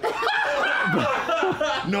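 People laughing and snickering, several voices overlapping.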